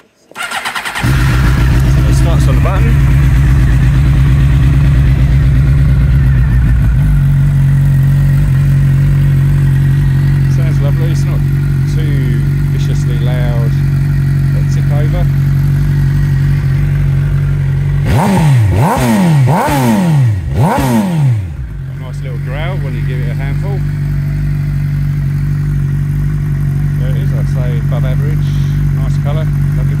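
Suzuki GSX-R K6 inline-four motorcycle engine with a custom-made exhaust starting about a second in and idling, blipped four times in quick succession about two-thirds of the way through, then idling again.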